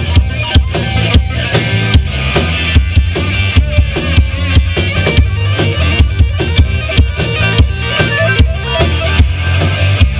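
Live rock band playing a fast instrumental break: a drum kit keeping a driving beat over electric bass and electric guitar.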